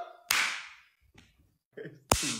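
A single sharp, whip-like crack that fades over about half a second, followed by a gap and a brief snatch of voice near the end.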